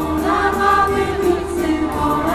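Women's folk choir singing a folk song through stage microphones and loudspeakers, a new, louder phrase starting right at the beginning.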